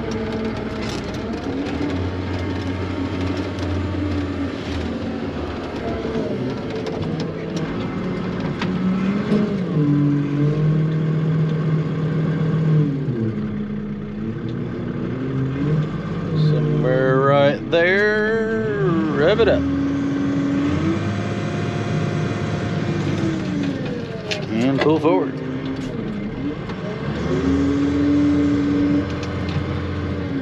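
Off-road dump truck engine running from inside the cab while the bed is tipped to dump a load of logs, its pitch stepping up and down as it is revved under the hoist's load. Brief, louder wavering sounds come over it about halfway through and again a few seconds later.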